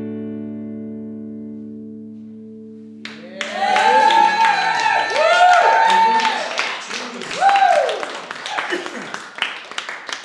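An acoustic guitar's last strummed chord rings out and fades, then about three seconds in a small audience breaks into whooping and applause, the clapping thinning out toward the end.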